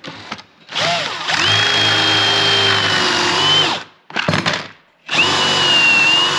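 Cordless DeWalt drill boring Kreg pocket holes into plywood through a pocket-hole jig: a steady whining run of about three seconds, a short blip, then a second run starting near the end.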